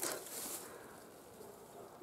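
Quiet outdoor ambience: a faint, even background hiss with no distinct sound event, fading slightly after the first half second.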